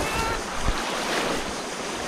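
Muddy water sloshing and splashing around people wading through a shallow flooded pond, with wind buffeting the microphone. A brief thump comes a little under a second in.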